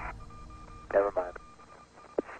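A short burst of a voice about a second in, with faint, on-and-off beeping tones behind it.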